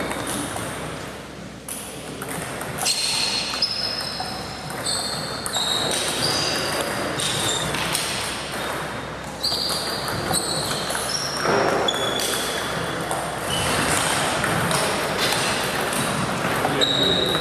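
Celluloid table tennis balls ticking off bats and tabletops in quick rallies. Each hit gives a short, high ping, and the hits come in irregular runs throughout, with balls from a neighbouring table mixed in.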